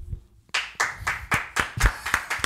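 A person clapping hands, a quick irregular run of sharp claps starting about half a second in.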